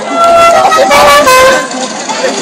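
Novelty horn on a Super Mario-themed soapbox kart honking. It holds a tone for about a second and a half, shifts in pitch partway through, then stops.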